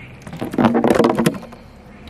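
A skimboard being grabbed and flipped over on rough wet concrete. Its edge scrapes and knocks against the ground in a dense burst of clatter starting about half a second in and lasting about a second.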